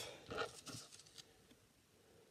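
A short breath about half a second in, then a few faint light clicks and rustles of a playing card being drawn from a deck and handled.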